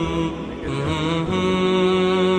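Background music: a slow melody of long held notes with a slight waver.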